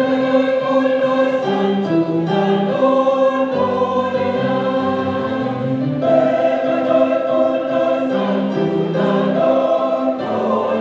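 A church choir singing a gospel song in several-part harmony, with held notes moving together from chord to chord.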